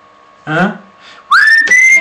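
A man whistling a single note that slides up and then holds steady, starting a little past halfway through. It is preceded about half a second in by a brief vocal sound that rises in pitch.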